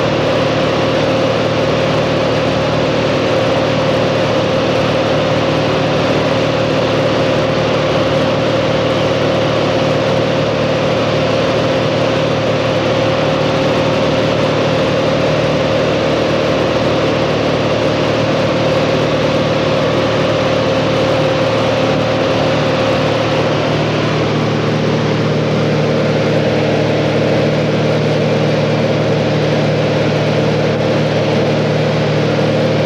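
A small plane's engine running steadily, heard from inside the cabin as a loud even drone with a constant pitch; about 24 seconds in, its tone changes slightly.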